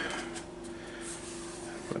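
Quiet small-room tone with a steady low hum, and faint rustling from the plastic body being handled.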